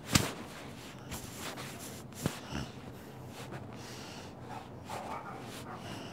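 Handling noise from the recording phone or camera being gripped and moved close to the microphone: rustling, with a sharp knock right at the start and another a little over two seconds in.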